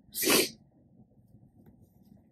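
One short, sharp burst of breath through the nose from a woman who is crying, lasting under half a second.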